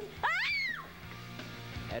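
A girl's short, high-pitched exclamation "Ah!", lasting about half a second, that rises sharply in pitch and falls again.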